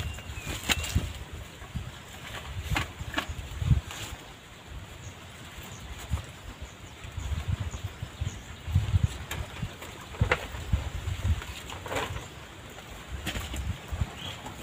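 Scattered clicks, knocks and low bumps of gear being handled close to the microphone, irregular and with no steady rhythm.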